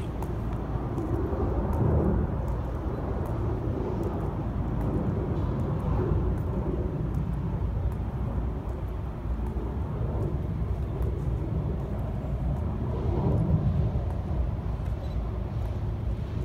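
Steady low outdoor rumble with no clear single source, swelling briefly about two seconds in and again near the end, with a few faint ticks.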